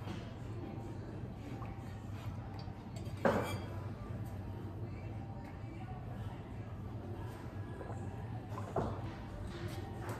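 A ceramic mug of tea being handled, with two short knocks, one about a third of the way in and one near the end, over a steady low room hum.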